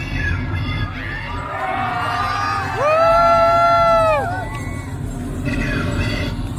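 Concert crowd cheering and shouting in a large audience. About three seconds in, one voice close by holds a single long, high call for about a second and a half, the loudest sound here.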